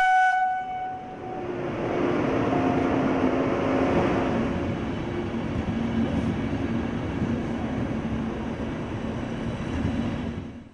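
A train horn gives one short toot, then a passenger train rolls past along the platform. Its rumble builds over a couple of seconds and holds steady.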